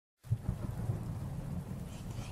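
Quiet, atmospheric opening of a pop song: a low, uneven rumble with a faint hiss above it, starting a moment after silence, before any beat or vocals come in.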